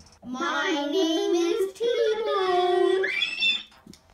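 A child singing loudly without words, holding wavering notes, then breaking into a high squeal that rises sharply about three seconds in.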